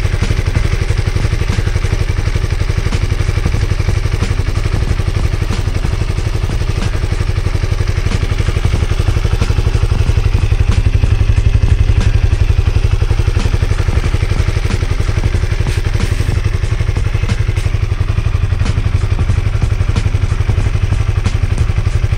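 Honda CB150R single-cylinder engine idling steadily, recorded close up, running on a fresh fill of 100% cooking oil in place of engine oil, which the owner finds makes it run smoother.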